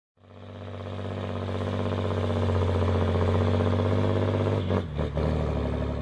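A heavy engine running with a deep, steady note. It swells up from silence over the first couple of seconds, holds steady, then drops lower and falters shortly before the end.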